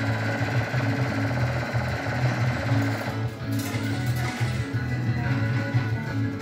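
Monopoly fruit machine paying out a win: a rapid run of fast ticks as the credit meter counts up, stopping about halfway through, over the machine's steady pulsing music.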